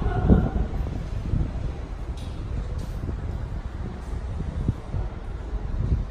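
Low rumble and thumps of handling noise on a handheld camera's microphone as it is carried and panned, with a couple of faint clicks about two seconds in.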